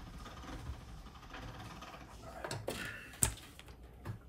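Light handling noises of clay sheets being moved on a work table, with one sharp click a little after three seconds in as a rolled sheet of clay is set down.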